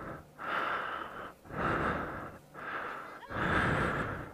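A person breathing hard, loud breaths in and out about once a second.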